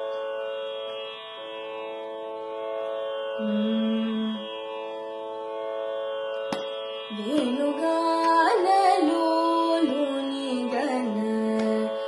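A steady tanpura drone holds its notes, with a short low note about four seconds in and a sharp click just before seven seconds. Then a young woman's voice begins a Carnatic song in raga Kedaragowla, her pitch sliding and swinging between notes.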